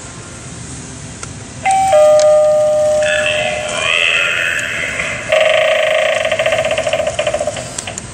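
Battery-powered Halloween eyeball doorbell prop, pushed, playing a loud two-note ding-dong chime a couple of seconds in. The chime runs into a wavering spooky sound effect and then a rapidly pulsing sound that stops just before the end.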